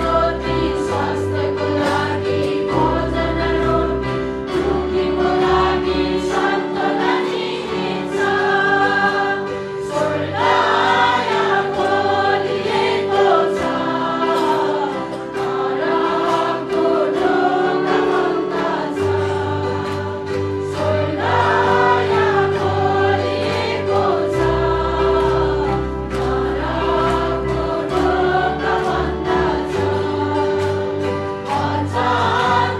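A worship band plays a hymn: several women sing together into microphones, backed by electric guitar, a low bass line and a steady beat.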